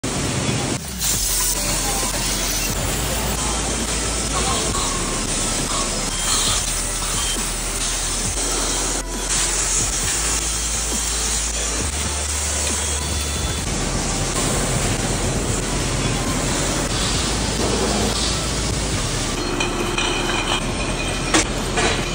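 Loud, steady din of a glass bottle production line: machinery running and gas burners hissing. The low hum changes abruptly several times as the shot changes. Near the end come sharp clinks of glass bottles.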